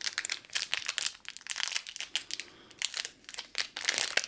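Plastic packaging crinkling and crackling in irregular bursts as a power cable and plug adapter are unwrapped by hand, with a quieter stretch a little past the middle.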